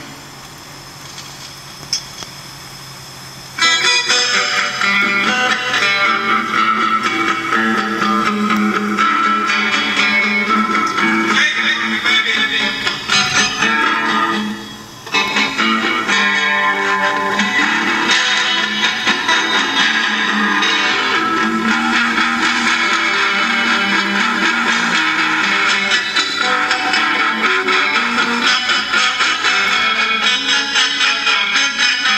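Guitar-led music, electric guitar prominent, coming in loud about three and a half seconds in after a quieter opening, with a brief drop in level about halfway through.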